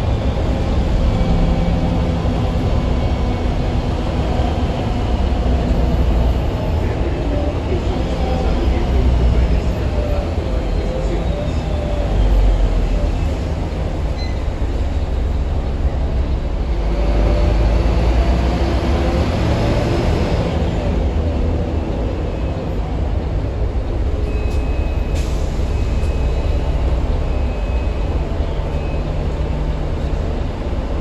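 Transmilenio bus engine and drivetrain running, heard from inside the cabin at the front, with a deep rumble and whining tones that swell and fade as the bus slows and pulls away. Near the end comes a run of short, high beeps.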